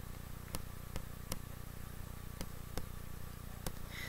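Faint, irregular ticks and taps of a stylus writing on a drawing tablet, about eight in four seconds, over a low steady hum.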